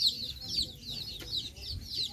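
Chicks peeping: many short, high-pitched, falling peeps, several a second, overlapping one another.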